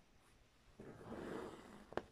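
Green cristal embroidery thread being pulled through cotton fabric held taut in a hoop: a soft rasp about a second long as the strand is drawn through, ending in a short sharp click as it comes tight.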